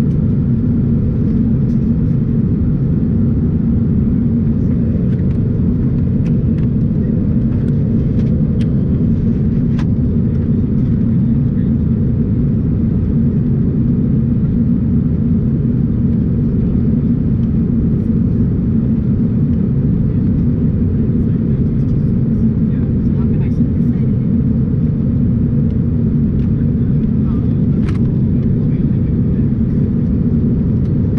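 Steady low rumble of an Airbus A350's cabin noise heard from a window seat, unchanging throughout, with faint scattered small sounds above it.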